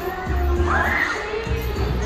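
Crowd of children shouting in a trampoline park, with one child's high cry rising and falling about a second in, over background pop music with a heavy bass beat.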